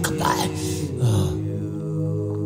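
Soft, sustained ambient worship pad of held low chords, with a man's rapid, choppy syllables of prayer in tongues over it for the first part; the voice stops about two-thirds of the way through, leaving the held chords alone.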